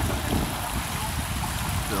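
Steady rush of creek water running over rocks into a swimming hole, with faint voices of people in the water.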